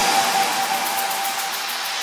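Break in a hardstyle track: the kick and bass drop out, leaving a hissing synthesized noise sweep with a held high tone that fades out about halfway. The noise starts to swell again near the end.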